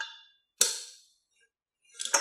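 Metal clacks from a camera-slider arm's rod being swung on its angle-adjustment joint: one at the start and a louder one just over half a second in, each ringing briefly, with more clacks beginning right at the end.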